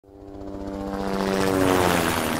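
Intro of a pop recording fading in from silence: a droning sound of many steady tones over a fluttering low pulse, swelling louder and rising slightly in pitch.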